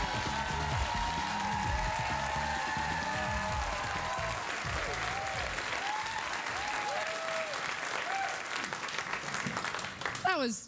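Studio audience applauding over walk-on music. The music's beat drops out about halfway, and the applause carries on and tapers off near the end.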